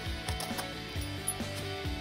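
A dog tearing and rustling wrapping paper off a present, a series of short crackling rips, over music playing in the background.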